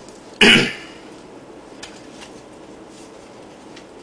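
A man clears his throat once, loudly, about half a second in. After that there is only low room hiss with a few faint clicks.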